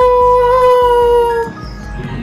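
A loud, long howl held on one steady pitch, cutting off about a second and a half in; quieter background music carries on after it.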